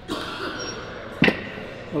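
A man shifting his seat back on a padded weight bench: faint rustling and scuffing, with one sharp thump a little past halfway through.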